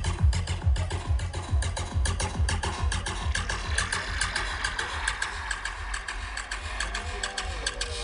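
Live psytrance DJ set over a festival PA, heard from within the crowd: a driving kick drum at about four beats a second fades out over the first few seconds into a breakdown with a rising synth wash.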